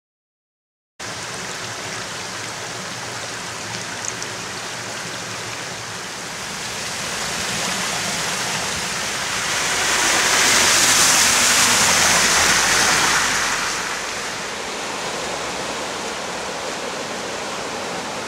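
Steady rush of a river running high in flood, swelling louder for a few seconds about halfway through.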